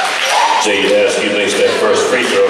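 Cheerleaders' voices chanting in an echoing gymnasium, with a basketball bouncing on the hardwood floor.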